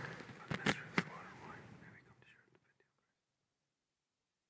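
A few light clicks and knocks of altar vessels being handled, three sharper ones within the first second and fainter ticks after, before the sound cuts out to silence about two seconds in.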